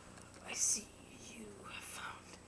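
Quiet whispered speech, with a brief hissing 's'-like sound about half a second in and faint whispered syllables near the end.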